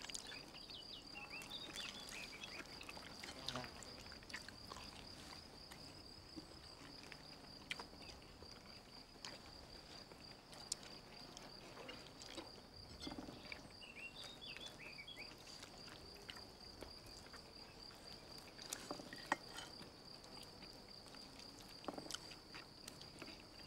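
Quiet garden ambience: an insect trilling steadily at a high pitch, with faint bird chirps and scattered soft clicks and knocks of dishes and cutlery on a table.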